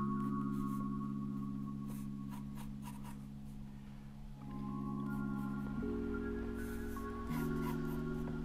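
Soft background music of sustained chords that change every few seconds, with mallet-like notes. Over it come short strokes of a pencil scratching on paper as an outline is sketched.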